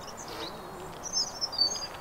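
A bird singing a short run of quick, high chirps about a second in, over faint outdoor background noise.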